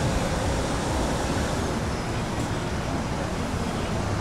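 Steady street traffic noise, a constant rumble and hiss of passing cars.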